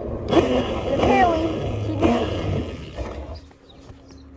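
Unclear voices over a loud rushing, rumbling noise, which drops away about three seconds in.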